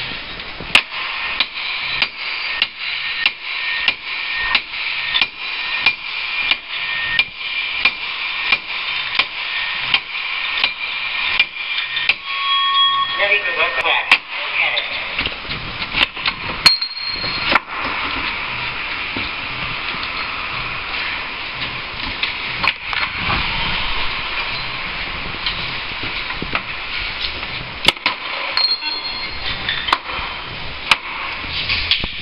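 Forcible-entry hand tools striking a training door, metal on metal, in a run of sharp blows about two a second. In the second half this gives way to steadier scraping and prying noise as the door is forced.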